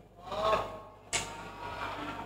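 Quiet pause between phrases of a boy's melodic Qur'an recitation through a microphone and hall PA: a faint trailing vocal sound, then a sudden short noise about a second in.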